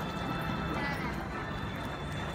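Horse-show arena ambience: steady chatter from the crowd in the stands with the hoofbeats of show horses going around the ring on the dirt footing.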